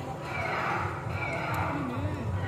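Cotton candy machine running with a steady low hum as its head spins floss, with high-pitched gliding voices over it.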